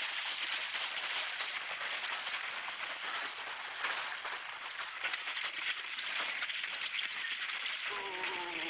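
Horse-drawn wagon rolling along: a steady rattling, crackling noise of wheels and hooves.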